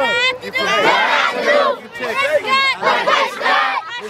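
A youth football team of young children shouting a team chant together, in loud shouted phrases with brief breaks between them.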